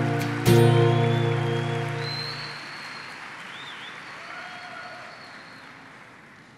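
Steel-string acoustic guitar's final strummed chord, struck about half a second in and left to ring, fading out over about two seconds as the song ends. A faint even noise with a few thin high tones carries on after it.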